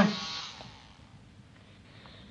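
A steady electric buzz that dies away within the first second, leaving faint room tone.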